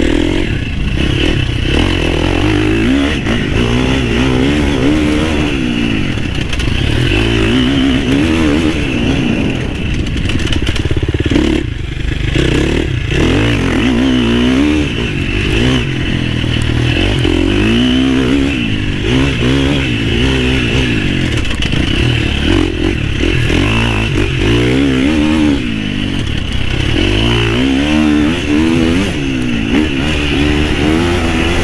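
Husqvarna FC350 four-stroke single-cylinder dirt bike engine under way, revving up and dropping back over and over as the throttle is worked, with a brief let-off near the middle.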